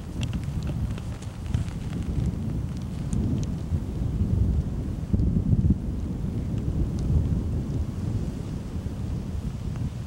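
Wind buffeting the microphone: a steady low rumble that rises and falls with the gusts.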